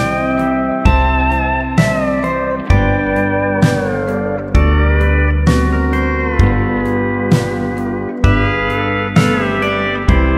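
Instrumental break in a song with no singing: a steel guitar plays a solo of sliding, bending notes over drums and bass keeping a steady, slow beat.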